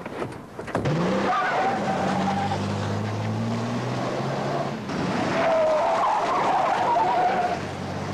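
A taxi car pulling away hard: the engine revs up about a second in and keeps running under full load, while the tyres squeal in two stretches, the second near the end.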